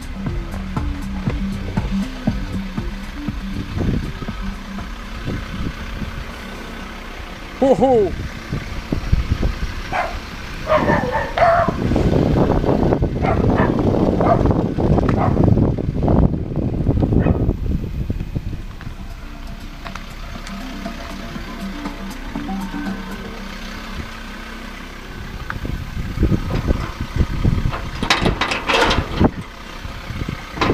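A Ford Ranger pickup's engine running steadily at idle, with a louder stretch of irregular noise over it in the middle.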